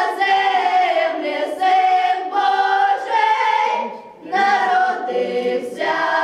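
A children's folk choir, joined by a few women, singing a Belarusian Christmas carol (kaliadka) unaccompanied, in long held phrases with a short break for breath about four seconds in.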